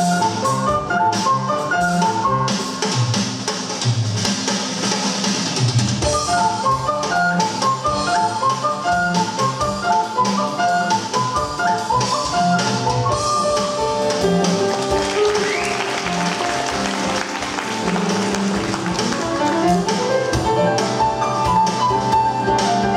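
Live ocarina, cello, piano and drum-kit quartet playing an instrumental tune, the ocarina carrying the melody over piano and cello with a drum-kit beat.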